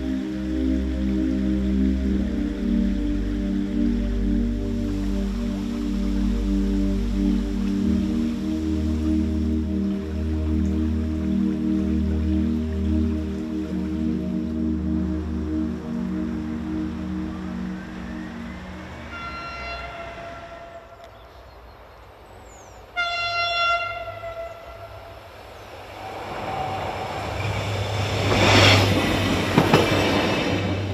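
Soft background music with long held notes gives way to a regional train's horn sounding twice, the second blast louder. The train then passes close by with a swelling rush of wheels on rail that peaks near the end.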